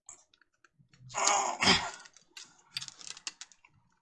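A butter knife clicking and scraping against the metal lid of a small jar of home-canned jelly as the lid is pried at. There is a louder noisy stretch about a second in, then a run of small clicks. The lid is held down by a strong vacuum seal from open-kettle canning and does not give.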